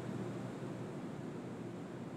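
Steady faint hiss and low hum of an open broadcast microphone: room tone.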